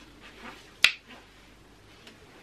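A single sharp finger snap a little under a second in.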